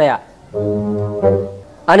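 Two low, steady horn-like notes, the first about two-thirds of a second long and the second shorter, starting about half a second in.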